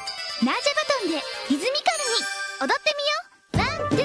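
Commercial soundtrack of sparkly tinkling chime effects over swooping gliding tones. After a brief drop just past three seconds, children's music with a beat comes back in.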